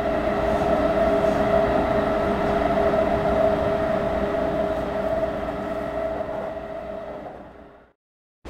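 Cabin running noise of a JR 215 series double-deck electric train: a steady rumble with a couple of held tones. It fades out over the last second or so.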